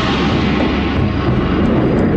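Loud, steady rumbling roar, a dramatic sound effect that set in suddenly just before and holds level.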